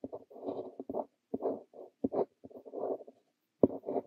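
Montblanc Le Petit Prince fine-nib fountain pen scratching across notebook paper while writing Korean characters, in short strokes with brief pauses between them. About three seconds in there is a short silence, then a sharp tap as the nib touches down again.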